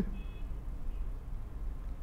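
Low steady hum with a brief faint high beep of two tones near the start, during a pause in speech.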